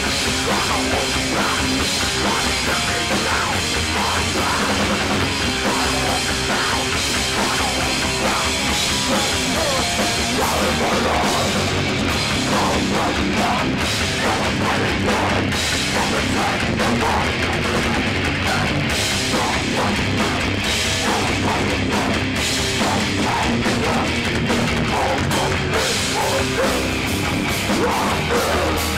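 Hardcore punk band playing live: distorted electric guitar, bass and a drum kit pounding along without a break.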